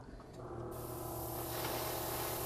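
Airbrush spraying paint onto a model locomotive's coupler: a steady hiss that starts a little under a second in, over a steady low hum.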